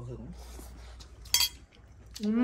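A metal spoon clinks once, sharply, against a dish about a second and a half in.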